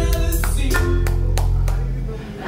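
Live band playing: drum kit strikes over held guitar and bass notes, with a singer's voice.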